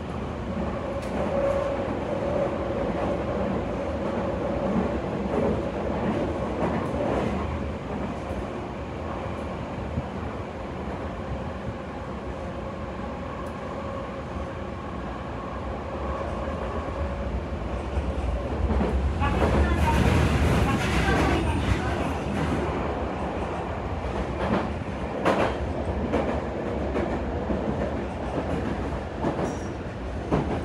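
Toei Mita Line 6500 series train running, heard inside the passenger car: steady wheel-on-rail rolling noise with a steady whine through the first half that fades away. About two-thirds of the way in, the noise swells louder with clattering clicks, then settles back with a few sharp clicks.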